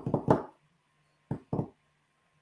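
A man chuckling in short bursts, a quick run of laughs at the start and two brief ones about a second and a half in, over a faint steady hum.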